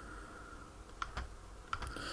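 A few faint computer keyboard clicks, a pair about a second in and another pair near the end, as keys are pressed to advance a slideshow, over a faint steady whine.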